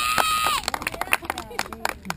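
A child's high-pitched, drawn-out shout that ends about half a second in, followed by scattered short clicks and knocks.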